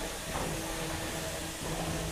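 Steady hissing background noise of the robot combat arena with a faint, even hum underneath; no single loud event stands out.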